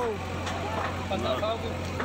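Faint, indistinct speech, quieter than the talk on either side, over a steady low hum.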